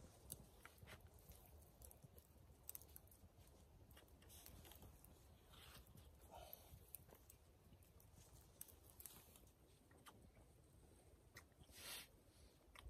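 Near silence, with faint scattered clicks and soft ticks.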